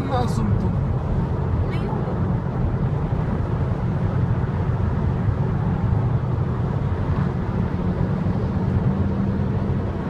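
Steady road and engine noise inside a Mazda's cabin while cruising at freeway speed, mostly a low rumble with a lighter hiss above it.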